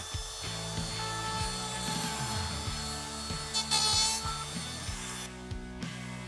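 Milwaukee Fuel brushless compact router running at speed, its top-bearing bit following a radius template to cut a quarter-inch radius on a wooden board corner; the cut gets louder for a moment about four seconds in, and the motor whine cuts off near the end.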